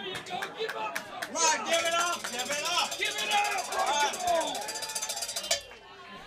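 Several people talking over one another, with a fast ticking rattle running through the middle few seconds.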